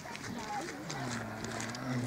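A man's voice holding a drawn-out, level hesitation sound, an 'uh', for about a second while he searches for the next street name.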